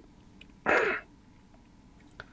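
A person's single short, audible breath, just past half a second in, with quiet room tone around it.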